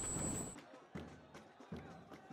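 Faint background noise from the replayed match audio that cuts off about half a second in, followed by near silence with a few faint clicks.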